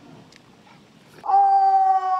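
A drill commander's long, drawn-out shouted parade command: one loud, steady, high-pitched held call that starts a little past halfway through.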